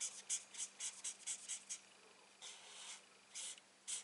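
Felt nib of a Stampin' Blends alcohol marker stroking across cardstock while colouring: a run of quick, short, faint scratchy strokes, then two longer strokes in the second half.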